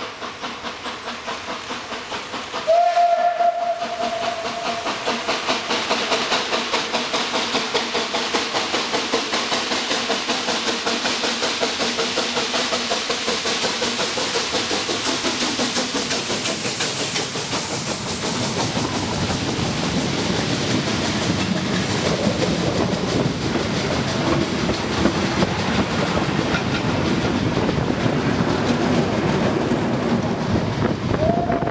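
A steam locomotive working a train past at close range, its exhaust chuffing in a steady rhythm. About three seconds in, its steam whistle sounds one long held blast. It passes with a hiss of steam, then the coaches follow, rumbling and clacking over the rail joints.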